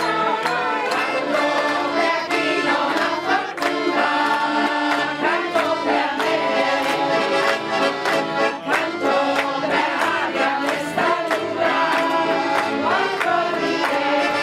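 Several accordions (Ziehharmonikas) playing a lively folk tune together, with listeners clapping along in time.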